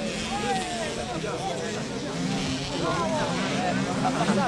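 Distant 65cc two-stroke minicross motorcycles revving high and rising and falling in pitch as they race around the track.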